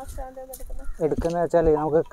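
A chicken clucking in a run of drawn-out calls, faint at first and louder in the second half.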